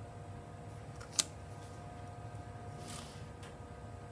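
One sharp click about a second in, from a pen and acrylic ruler being handled on paper, over a faint steady hum.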